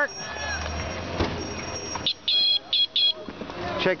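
A high-pitched horn toots four short times about two seconds in, the first toot a little longer than the rest, over steady street and traffic noise.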